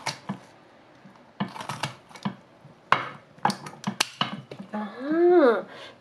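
Knife cutting through a whole oven-roasted duck on a plate: a series of sharp crackles and clicks. Near the end comes a drawn-out vocal exclamation that rises and then falls in pitch.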